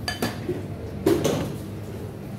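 Kitchen utensils and food containers clinking and knocking during food prep: a sharp ringing clink a fraction of a second in and a second knock about a second in, over a low steady hum.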